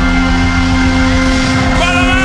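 Live rock band holding a loud, sustained chord on distorted electric guitars and bass, with a sliding, bending note coming in near the end.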